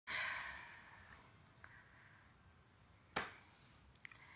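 A woman's soft, breathy sigh fading over the first second, then a short sharp breath about three seconds in.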